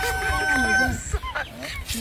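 A rooster crowing: one long, steady held note through about the first second, then shorter broken calls.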